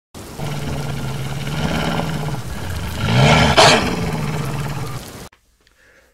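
An intro sound effect: a loud, rough roar that swells to its peak about three and a half seconds in and cuts off suddenly about five seconds in.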